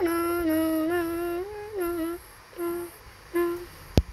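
A person humming a simple tune in a few short, mostly level held notes with brief gaps between them. A sharp click sounds at the very end.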